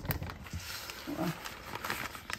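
Plastic bag of shredded cheese crinkling and rustling as it is tipped and the shreds pour into a stainless steel mixing bowl.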